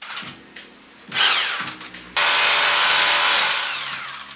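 A handheld power tool cutting into a plastered wall to make channels for electrical wiring. It runs in two short bursts, then a loud steady run from about two seconds in that eases off near the end.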